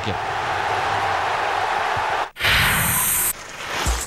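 Football stadium crowd cheering a penalty-shootout win. Just over two seconds in, the crowd cuts off, and a loud, bright whoosh lasting about a second follows: a broadcast transition sound.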